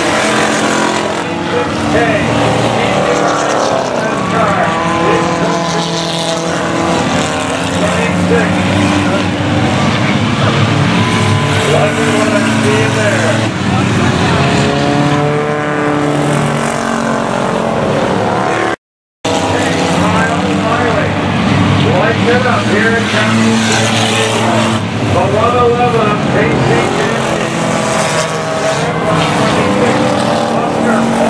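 A field of enduro race cars, old street sedans, lapping a paved oval. Several engines run at once, rising and falling in pitch as the cars pass. The sound cuts out completely for a moment about two-thirds of the way through.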